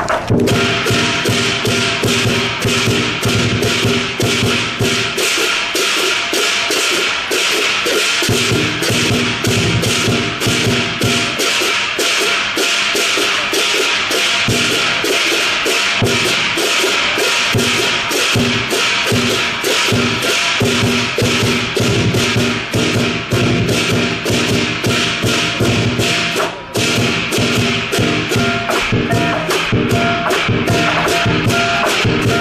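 Chinese lion dance percussion, with drum, cymbals and gong, playing a fast, steady beat of loud strikes and ringing metal, with a momentary break near the end.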